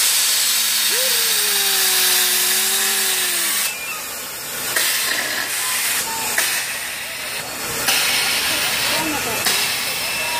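A loud hiss that starts and stops in patches, with a person's single long drawn-out call over it for the first few seconds and short bits of voices later.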